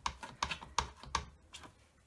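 A few light clicks and taps, about one every half second over the first second and a half, as a clear rubber stamp is wiped clean with a wad of paper towel on a clear plastic plate.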